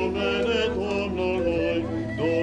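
Orthodox liturgical chanting: voices singing a slow, held melody over a steady low drone.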